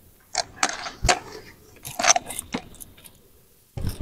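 A few short clicks and knocks from a van's leather captain seat being adjusted, as its leg rest and backrest are brought back up to sitting position.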